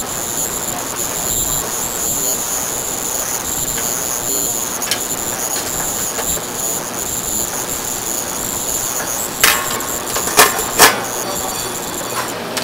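Steady hiss of a stainless steel steamer pot on the boil, with a thin high whine over it. Near the end come three sharp metal clanks as the lid goes on.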